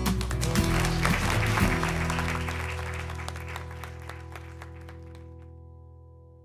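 Applause from the audience over outro music; the clapping thins and fades out about five seconds in while the music's steady held notes carry on and fade.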